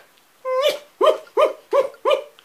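A man's high-pitched cackling laugh, imitating Jack Nicholson's Joker: one drawn-out note, then four short, rhythmic bursts, about three a second.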